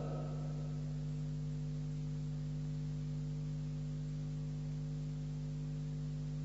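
Steady low electrical mains hum in the recording, a few held tones under faint hiss.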